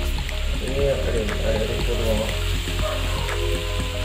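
Background music with a voice, over the faint sizzle of fish fillets frying in oil on a pan.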